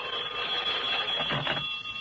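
Telephone bell ringing, one long ring that stops about one and a half seconds in as the call is answered.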